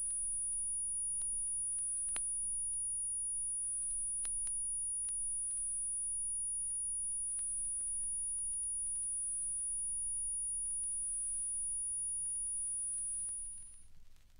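A steady high-pitched electronic tone, held at one pitch, on the audio line just after it is unplugged, with a few faint clicks. The tone cuts out about a second before the end.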